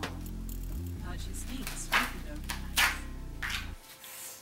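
Background music with steady low tones, over which a paper napkin being peeled off a printer sheet rustles in three short bursts, the loudest about two seconds in. The music drops out just before the end.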